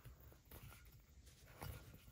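Near silence with faint handling sounds: hands gripping and twisting a metal Poké Ball tin, with a few soft clicks and rubs, the clearest about three-quarters of the way in.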